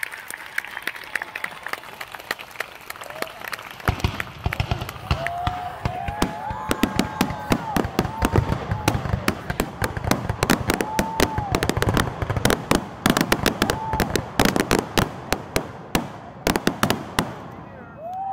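Audience applauding with scattered whoops and cheers. The clapping swells about four seconds in and thins to a few separate claps near the end.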